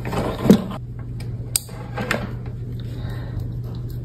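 A few sharp, light clicks over a steady low hum.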